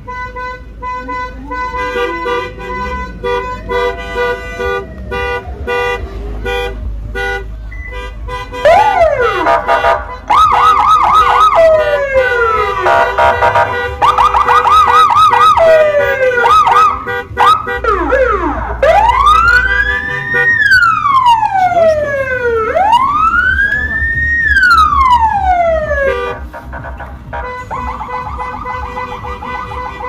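Car horns and electronic siren sounders on a convoy of cars. First come several seconds of repeated steady horn blasts. Then come rapid warbling yelps and falling glides, and two long wails that each sweep up high and back down, before a steady warbling tone near the end.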